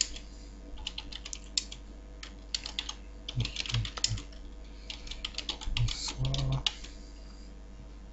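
Typing on a computer keyboard: quick runs of key clicks in several bursts with short pauses between them, dying away about two-thirds of the way through.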